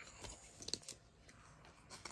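Faint crinkling and a few light clicks of clear plastic binder pocket pages and trading cards being handled as a page is turned, mostly in the first second.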